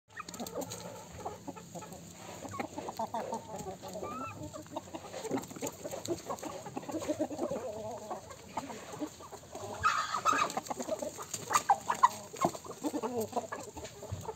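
A flock of chickens clucking continuously with many short overlapping calls, one louder, higher-pitched call standing out about ten seconds in.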